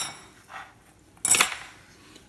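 Metal rib-hanging hooks clinking as they are pulled from cooked racks of ribs: a sharp metallic clink at the start and a louder one about a second and a half in, each with a brief high ring.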